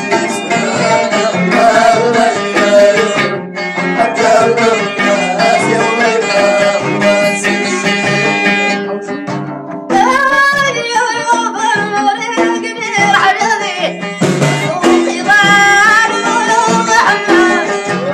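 Middle Atlas Amazigh folk music: a plucked lotar lute and bendir frame drums keep a steady driving beat. About ten seconds in the sound changes abruptly and a solo voice sings a wavering, ornamented melody over the drums.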